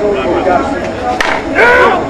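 A softball bat striking the ball about a second in, one sharp crack, followed by men shouting.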